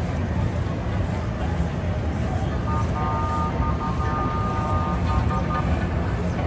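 Street parade noise: voices in the crowd over a steady low vehicle rumble as a car rolls slowly past. A steady sound made of several held tones comes in about halfway through and lasts roughly three seconds.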